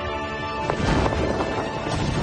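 Dramatic film score music; about two-thirds of a second in, a sharp hit lands and a dense, pounding rush of sound joins the music.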